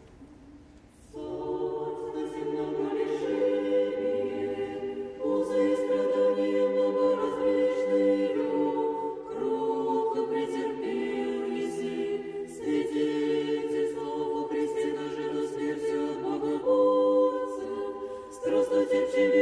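A choir singing unaccompanied in slow, held chords, coming in about a second in and changing chord every few seconds.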